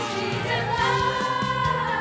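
A group of girls singing together over accompaniment music with a steady beat, holding one long note through the middle.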